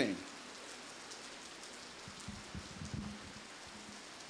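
A steady, faint hiss of background noise in a pause between speech, with a few soft low thumps about two to three seconds in as the speaker moves at the lectern with a handheld microphone.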